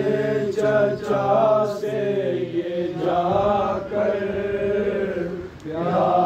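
Unaccompanied male chanting of a nauha, an Urdu lament, sung in long held, gliding melodic lines without instruments. It dips briefly about five and a half seconds in.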